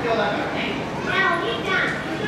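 Continuous talking by several voices, children's among them.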